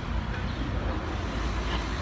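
Steady low rumble of street traffic, with no distinct event standing out.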